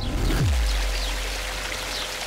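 Intro logo sound design: a downward sweep in the first half-second that settles into a deep, sustained bass drone, under a hissy, water-like shimmer.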